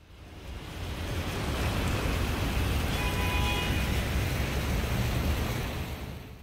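Splashing water from a plaza fountain's rows of small jets: a steady rush that fades in over the first second or so and fades out at the end, with a brief faint tone about halfway through.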